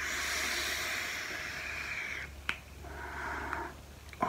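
A person drawing on an e-cigarette: a steady airy hiss of a long pull lasting about two seconds, then a sharp click and a shorter, softer breath.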